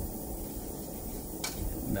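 Small butane lab burner flame running with a steady low rumble, with a faint click about one and a half seconds in.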